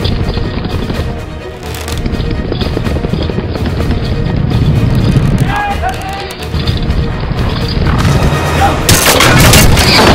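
Battle-scene soundtrack: music over a steady low rumble of a mounted charge, with a short pitched cry about five and a half seconds in. About nine seconds in, a loud, dense burst of crashing noise takes over.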